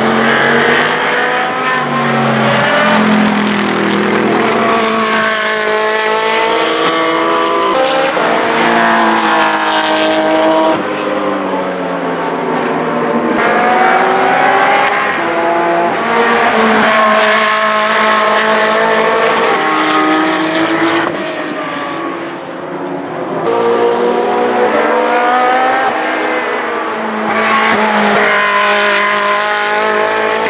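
GT race cars with V8 engines, a Mercedes SLS AMG GT3 and Ferrari 458s, passing one after another at speed, engine pitch repeatedly rising and falling through gear changes and braking for corners, with a brief lull in loudness about two-thirds of the way through.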